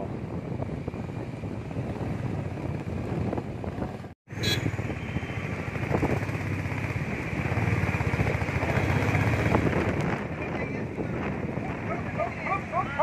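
Steady low rumble and rush of road traffic mixed with wind on the microphone, broken by a brief dropout about four seconds in.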